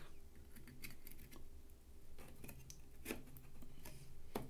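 Faint clicks and scrapes of a plug-in circuit board being pushed into its long pin header socket on a transceiver main board, with a few sharper clicks in the second half as it seats.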